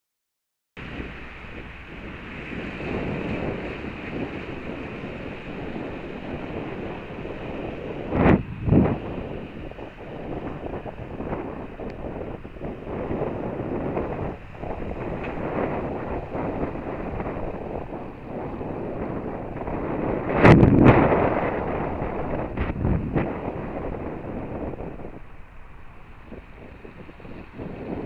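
Wind rushing over the microphone of a camera on a moving bike, steady throughout, with two loud buffeting surges about eight and twenty seconds in, easing off near the end.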